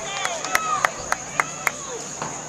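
A quick, even run of about seven sharp clicks, three or four a second, that stops partway through, over faint background voices.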